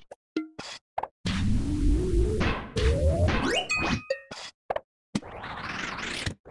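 Chopped-up, effect-processed cartoon sound effects and music, cut off abruptly again and again: a few short pops, then a noisy stretch with a tone sliding steadily upward, a brief high beep, and a swelling hiss near the end.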